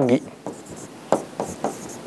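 Pen strokes on the glass face of an interactive whiteboard as a word is handwritten: a series of short, faint scratchy strokes a few tenths of a second apart.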